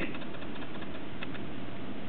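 Steady room tone in a pause in the talk: an even low hum and hiss, with one faint tick about a second in.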